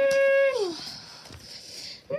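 A high voice holds one long steady wailing note, then slides down in pitch and fades out under a second in.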